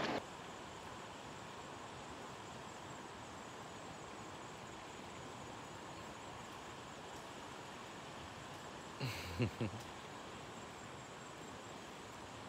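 Steady rush of a flowing stream, with a brief voice about nine seconds in.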